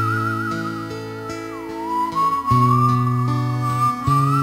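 Instrumental passage of a song: a high, wavering whistle-like melody with vibrato, sliding down in pitch about halfway through, over sustained low chords.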